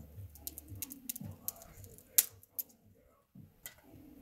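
A few scattered sharp clicks and light knocks, the loudest a little past two seconds in, over a faint low murmur.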